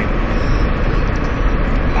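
Steady road and engine noise inside a moving car's cabin: a continuous low rumble with a hiss over it.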